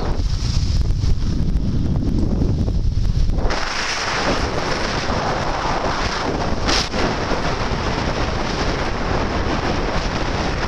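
Wind rushing over the microphone of a moving skier, mixed with the hiss of skis sliding on groomed snow. It starts as low buffeting and turns into a brighter, even hiss about three and a half seconds in.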